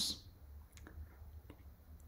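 A few faint, short clicks over a low steady hum.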